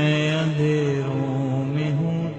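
A man's voice singing long, drawn-out held notes of an Urdu devotional song, a chant-like dua asking the Lord of the Kaaba for forgiveness.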